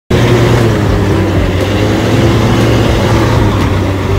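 Engine of a TANA tracked shredder running steadily and loudly, a constant low drone with no change in speed.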